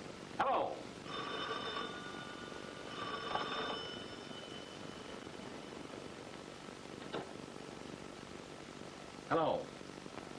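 An old telephone bell rings twice, each ring lasting about a second, with a pause of about a second between them. About seven seconds in there is a single click.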